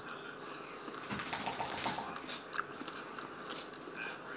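Faint close-up chewing and mouth sounds of a person eating a mouthful of cornbread, with a few soft clicks about two seconds in.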